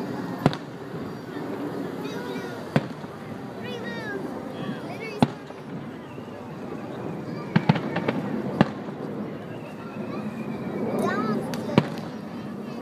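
Aerial fireworks shells bursting: about eight sharp bangs at irregular intervals, three of them in quick succession a little past the middle.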